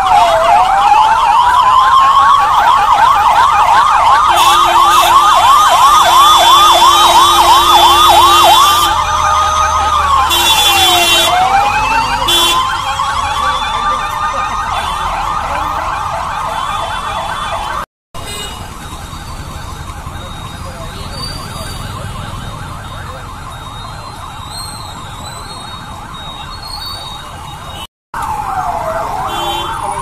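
Police vehicle sirens wailing, switching to a fast yelp for several seconds, with a steady horn blast sounding over them a few seconds in. After a cut the sirens carry on more faintly, and a slow wail returns near the end.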